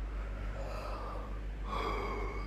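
A woman yawning behind her hand: a long breathy in-breath that builds and grows louder toward the end.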